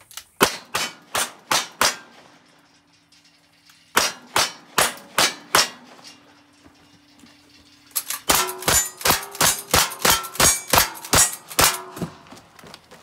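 Revolver gunshots at steel targets, with the struck steel ringing after them. First comes a string of five evenly spaced shots, then after a pause a second string of five. Near the end a faster string of a dozen or so shots follows.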